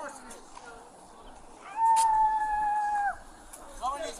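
A person's high-pitched cry of pain, one held note lasting about a second and a half, dipping at the end, as a taser probe is pulled out of them, heard on police body-camera audio.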